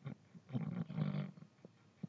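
A faint, low human voice sound, such as a murmur or grunt, about a second long, heard over a video call.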